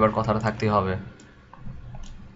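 A man talking for about the first second, then a few faint, scattered computer mouse clicks.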